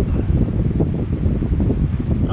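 Loud, low, rough rumble of air hitting the microphone, with no pauses.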